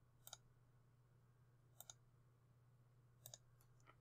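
Near silence broken by three faint computer-mouse clicks about a second and a half apart, each a quick double tick of the button going down and coming back up, over a low steady hum.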